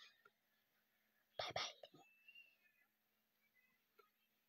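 Near silence, broken once by a softly spoken "bye" about a second and a half in.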